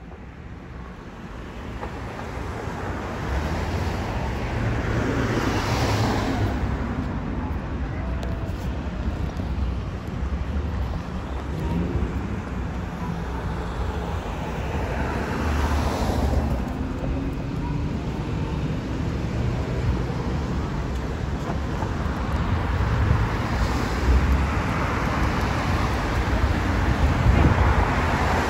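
Road traffic: cars passing close by one after another in a steady rumble, with louder passes about six and sixteen seconds in.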